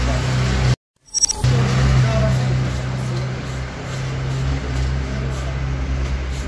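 A steady low engine-like hum, cut off abruptly for a moment about a second in before it resumes. Near the end, an aerosol spray-paint can hisses in short bursts as it is sprayed.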